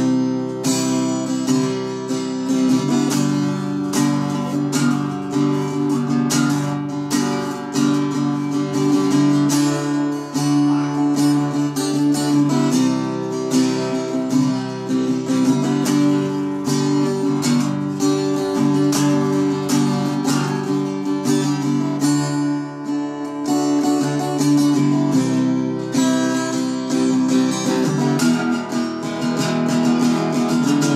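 Acoustic guitar strummed in a steady rhythm, its chords ringing, with a brief lull about two-thirds of the way through.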